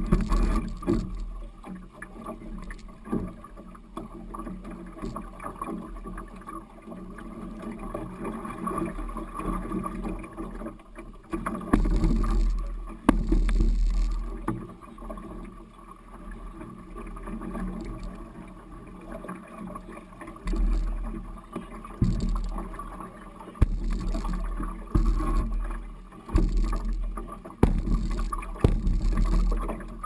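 A canoe being hauled by hand through a shallow, stony river: water runs and splashes along the hull throughout. From about twelve seconds on there are louder low spells of rumbling as the hull bumps and grinds over the stony bed, several of them close together near the end.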